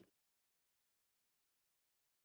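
Silence: the sound cuts out completely just after the start and stays silent.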